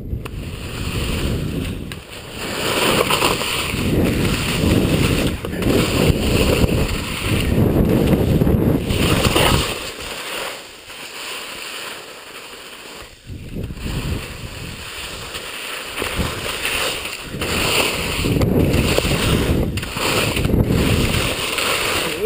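Wind buffeting the body-mounted camera's microphone and skis scraping and hissing over snow through a series of telemark turns, swelling with each turn and quieter for a few seconds midway. The skier is breathing hard from exhaustion.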